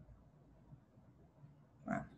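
Near silence: room tone, with one short burst of a person's voice just before the end.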